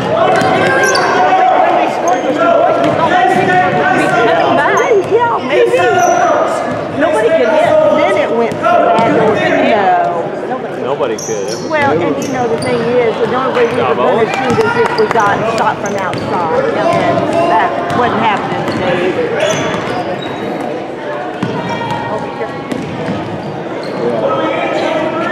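Basketball bouncing on a hardwood gym floor as it is dribbled, under a constant clamour of voices echoing around the large hall.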